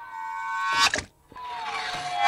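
A held, pitched humming tone with many overtones swells in loudness and cuts off sharply with a click a little under a second in. After a short gap a second tone slides slowly down in pitch.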